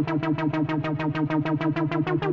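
Yamaha CS20M monophonic analog synthesizer repeating one low note about seven times a second. Each note has a short 'wa' sweep.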